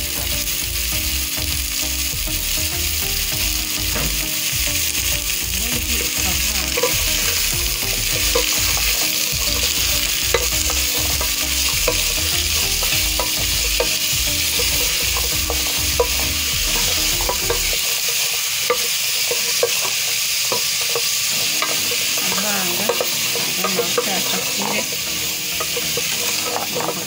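Sliced carrots, onions and green peppers sizzling as they fry in a metal pot, stirred with a wooden spoon that scrapes and knocks against the pot in scattered clicks. A low hum runs underneath and stops about two-thirds of the way through.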